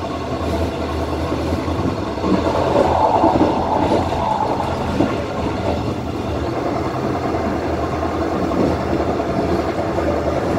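Electric commuter train running along the track, heard from inside the train: a steady rumble of wheels on rail with a low hum and a couple of sharp knocks.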